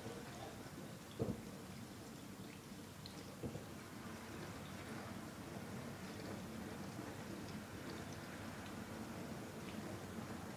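Blomberg GVN9483E dishwasher running its Intensive 70 °C programme: a steady hiss of water spraying inside the tub, with a couple of brief knocks, one about a second in and another about three and a half seconds in.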